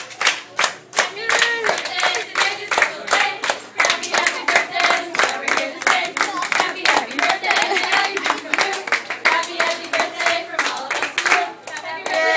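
A group of people clapping in a steady rhythm, about four claps a second, with voices singing along.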